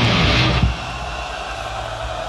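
A live metal band plays the last moment of a goregrind song, with distorted guitars, bass and drums, and stops abruptly less than a second in. A lower, steady background noise follows.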